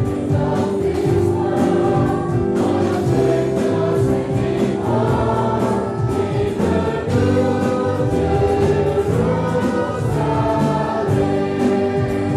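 Many voices singing the chorus of a gospel hymn together, with instrumental accompaniment under sustained sung notes.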